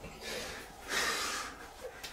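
Stifled, breathless laughter: a soft breath near the start, then a louder airy gasp about a second in, lasting about half a second.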